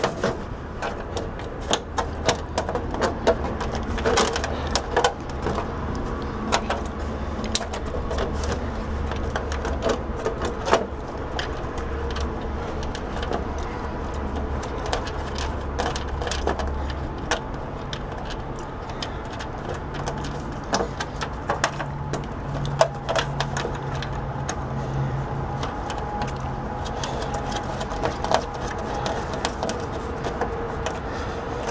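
Scattered clicks and light plastic knocks as fingers work at a hole in a television's plastic rear cover, fitting a push-reset overload circuit breaker into it. A steady low hum sits underneath and shifts to a slightly higher hum a little past halfway.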